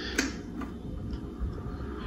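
A 1984 Britânia B30 L desk fan running with a steady low hum, its blades spinning. One sharp click sounds shortly after the start.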